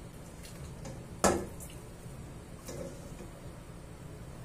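Water dripping off cooked penne in a ceramic bowl into a steel pot, with one sharp clink a little over a second in and a softer knock near three seconds as the bowl meets the pot.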